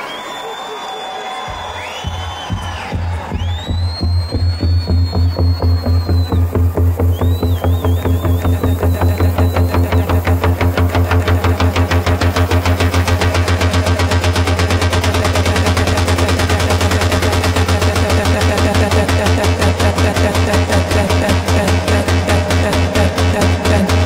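Future rave electronic dance music from a live DJ set. A heavy bass and a steady driving beat come in about one and a half seconds in, with high gliding, wavering tones over the first half.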